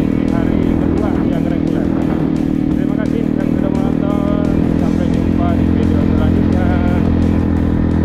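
Trail motorcycle engine running steadily at cruising speed, heard from the rider's own bike, with music and a singing voice over it.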